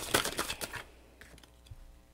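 Tarot cards shuffled in the hands: a quick run of crisp card clicks that stops under a second in, leaving only faint handling sounds.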